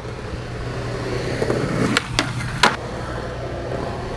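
Skateboard wheels rolling on pavement, building slowly, with three sharp clacks a little after halfway.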